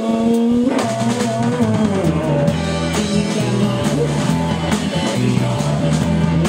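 Live rock band playing an instrumental passage: a lead line with bent, gliding notes over bass and a steady drum-kit beat.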